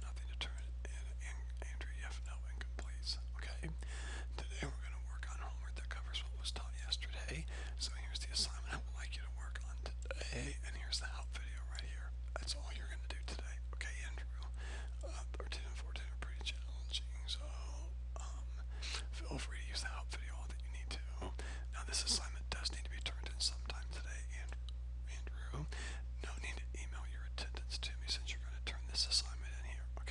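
Steady low hum with many faint, scattered clicks and soft scrapes from a computer mouse being clicked and dragged to draw annotations.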